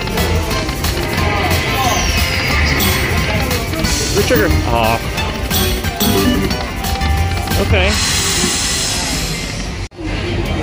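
Dollar Storm Emperor's Treasure video slot machine playing its free-game bonus music and reel sounds, continuous and loud. The sound cuts off abruptly just before the end.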